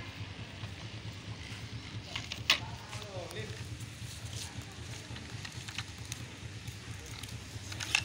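A steady low background hum with faint distant voices, and one sharp click about two and a half seconds in, with another click near the end.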